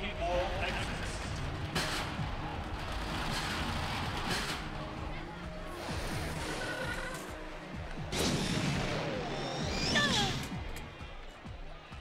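Cartoon action soundtrack: dramatic background music under crash and impact sound effects, with several sharp hits a few seconds apart and a denser, louder stretch of noise near the end.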